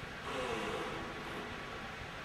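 Quiet room tone with a faint steady high whine, and a faint pitched murmur lasting about a second, starting a quarter second in.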